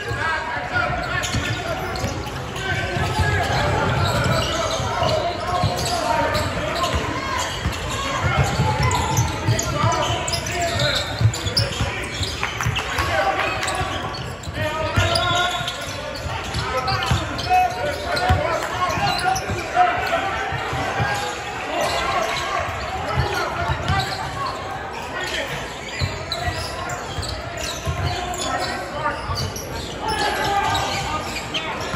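Basketball bouncing on a hardwood gym floor with the running thumps of play, amid voices of players and spectators echoing in a large hall.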